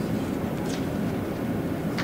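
Steady low rumble of room background noise in a pause in speech, with a faint brief hiss less than a second in.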